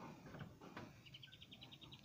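Near silence: room tone, with a faint, rapid high chirping trill of about a dozen quick pulses in the second half.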